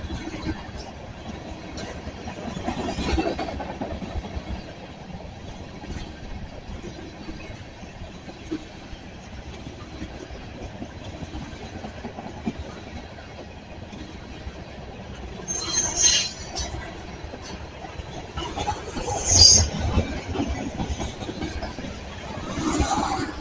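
Freight train tank cars rolling past at speed: a steady rumble of steel wheels on the rails, swelling about three seconds in. Two short, loud, high-pitched wheel screeches come near the end.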